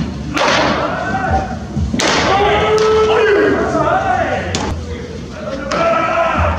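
Pitched baseballs smacking into catchers' mitts in a bullpen: a few sharp pops, the loudest about half a second in and two seconds in.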